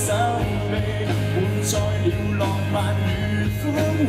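Live pop-rock band playing through a PA: steady strummed acoustic guitar over bass and drums, with a cymbal crash at the start and another about a second and a half later.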